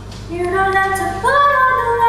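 A woman singing a song in long held notes; a new phrase comes in about a third of a second in and steps up in pitch about a second later.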